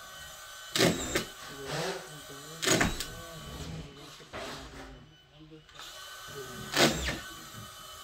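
Three sharp knocks from work on a wooden staircase: two about two seconds apart early on, and a third after a longer gap near the end. Low voices can be heard between them.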